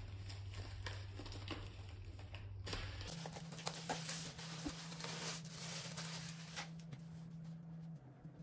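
Faint crinkling and crackling of clear plastic shrink-wrap being pulled off a laptop's cardboard box, with scattered small clicks over a low steady hum.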